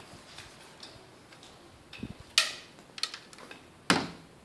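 Plastic latch and aluminium frame of a mosquito screen being handled: a few sharp clicks and clacks in the second half, the loudest about halfway and just before the end.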